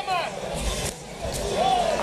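Mostly speech: a commentator's voice trailing off, then a short drawn-out voiced sound, over steady arena crowd noise.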